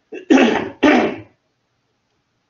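A man clearing his throat with two short, loud coughs.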